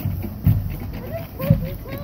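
Marching-band bass drum beating about once a second, two heavy thumps, while band members' voices call out in short rising and falling whoops.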